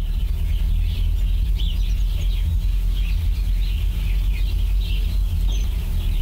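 Birds chirping repeatedly over a loud, steady low hum.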